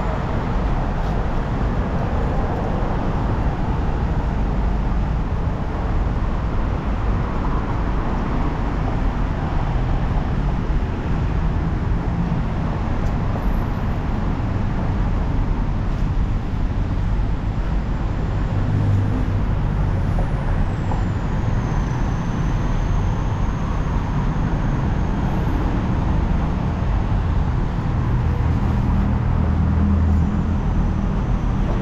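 Steady road traffic noise from a busy city street: a continuous low rumble of passing cars and other vehicles, swelling slightly as heavier vehicles pass, about 19 seconds in and again near the end.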